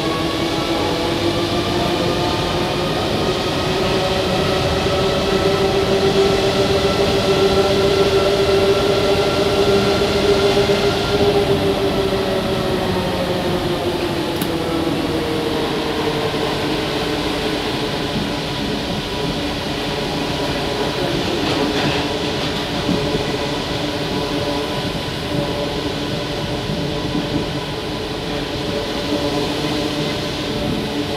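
Interior of a Paris Métro MP05 rubber-tyred train running. The whine of its traction motors, several tones together, climbs gently as the train gathers speed, then drops away about a third of the way through as it slows, over a steady rolling rumble.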